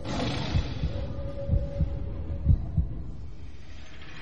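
A low sound-effect heartbeat: dull thuds, some in close lub-dub pairs, over a faint hum with a thin steady tone. It thins out toward the end.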